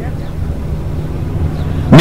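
Steady low background hum, with no clear event in it.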